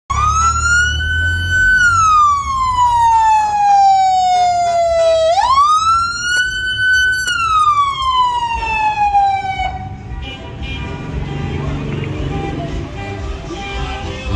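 Police vehicle siren sounding a slow wail: the pitch climbs, sinks slowly, jumps back up quickly, holds briefly and sinks again, then cuts off about ten seconds in. A low rumble runs underneath.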